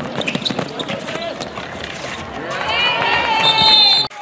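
Outdoor basketball game on a paved court: ball bounces and running footsteps among shouting players and spectators, then a long, loud shout that rises and holds for the last second and a half before cutting off abruptly.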